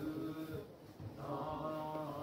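A low male voice chanting in long, steady held tones, breaking off for a breath just over half a second in and taking up the same held pitch again about a second later.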